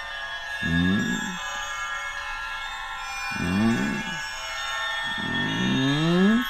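Eerie background music: a sustained high shimmering chord held throughout, with three low sliding tones swelling about a second long each, near the start, in the middle and near the end.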